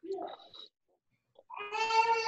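A high voice, likely a child's, coming over the video call: a short sound at the start, then a long drawn-out call held on one pitch that falls away at its end.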